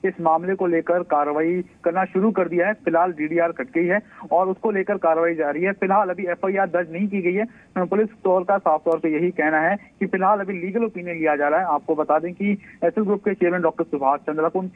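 A man's voice speaking without pause over a telephone line, narrow and thin-sounding with the high end cut off.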